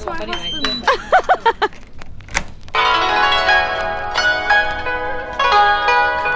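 A short voice sound with a wavering, swooping pitch in the first two seconds, then plucked-string background music that comes in about halfway through and carries on.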